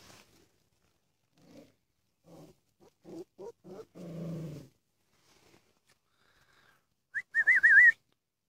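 Puppies making a string of short, low yips and grunts, then near the end a loud, high whine that wavers up and down in pitch.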